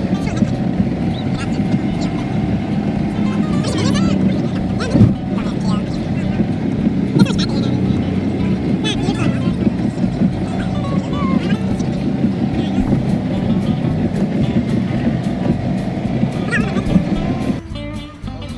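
Steady road and engine noise inside a moving car's cabin, with music and indistinct voices over it; it drops away suddenly near the end.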